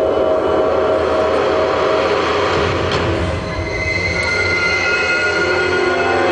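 Show soundtrack played loud through the venue's speakers: dense sustained tones, with screeching, train-like high squeals coming in about two thirds of the way through.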